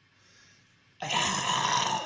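A person's loud, rough throat sound starts suddenly about a second in, after a near-silent first second.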